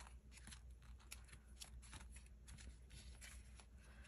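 Faint rustling and light irregular ticks of clear plastic sleeve pages being handled and leafed through in a sticker storage album.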